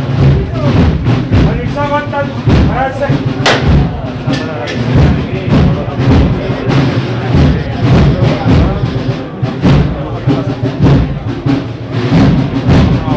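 Procession band music with drums beating through it, and voices heard a couple of seconds in.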